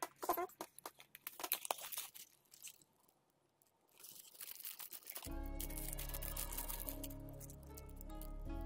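Crinkling and crackling of a small plastic bag of electronic components being handled for the first two seconds or so, then a quiet pause. About five seconds in, background music with sustained notes comes in.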